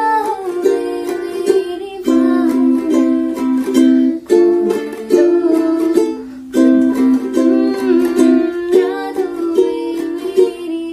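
Ukulele strummed through a Dm–C–Gm–C chord progression, with a woman singing along in Hindi.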